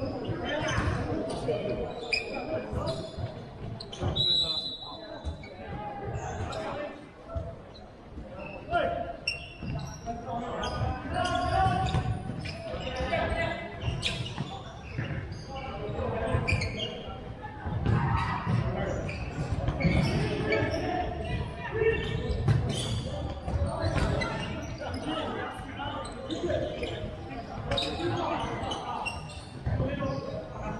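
Indoor futsal game on a wooden sports-hall floor: repeated knocks of the ball being kicked and bouncing, with players shouting, all echoing in the large hall.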